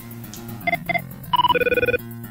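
Two short electronic keypad beeps as a phone handset is dialed, then a loud, warbling electronic telephone ring near the end. Soft guitar background music plays underneath.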